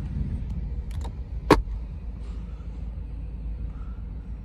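A steady low rumble with a single sharp click about one and a half seconds in, and a couple of fainter clicks just before it.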